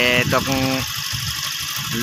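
Motorcycle engine running steadily with wind rumble on the microphone while riding; a man speaks over it for the first second.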